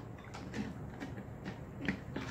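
Barbie Color Reveal doll being swished about in water inside a tall plastic tube, giving light, irregular knocks and clicks against the plastic, the loudest just before the end. It is the water dunk that reveals the doll's colours.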